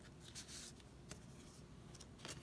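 Quiet paper handling: a card sliding out of a paper pocket in a handmade journal, with soft rustling and a light tap.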